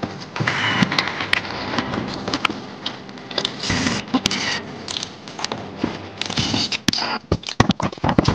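A cordless driver sets screws into corrugated metal roof panels in short runs of about half a second, between irregular clicks and knocks on the metal.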